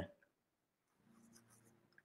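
Near silence on a video call: a pause between speakers, with only a very faint low hum.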